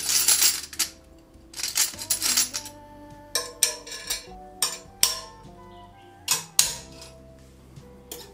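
Stainless steel S-hooks clinking as they are hooked one by one onto a metal wall rail: a jangle of several hooks together in the first second and again about two seconds in, then a series of sharp single clicks, each with a short metallic ring. Soft background music runs underneath.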